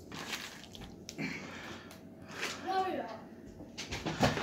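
Quiet table-side handling: soft rustles and light taps of hands spreading shredded cheese over a pizza on a metal pan, with a faint voice about two and a half seconds in.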